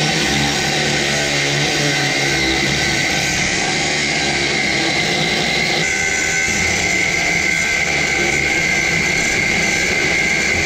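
Cordless angle grinder cutting into a steel washer: a steady high whine over a grinding noise. The tone changes slightly about six seconds in.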